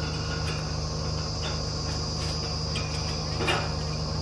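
The truck-mounted borewell drilling rig's engine running steadily, with a steady high-pitched whine over it. Scattered short metallic knocks come from the bore head, the loudest about three and a half seconds in.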